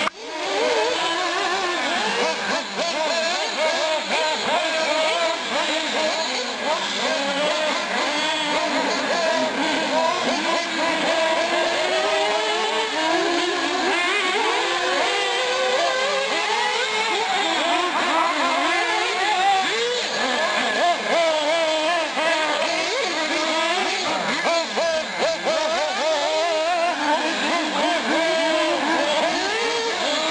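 Several 1/8-scale nitro R/C off-road cars running laps together. Their small high-revving engines whine over one another, the pitch rising and falling as each is throttled up and backed off.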